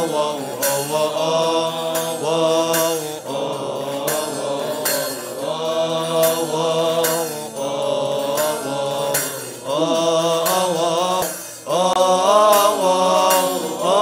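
Coptic liturgical chanting by a group of deacons: long, drawn-out sung lines whose pitch turns and wavers, broken by short breaths, with a regular percussive beat underneath.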